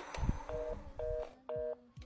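Telephone busy tone through a handset: three short two-note beeps about half a second apart, after a low thump at the start.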